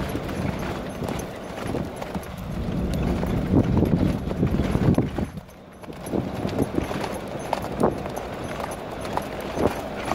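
Hoofbeats of a young grey Arabian colt cantering under a rider on hard, dusty dirt: a run of dull thuds, dipping briefly quieter about halfway through.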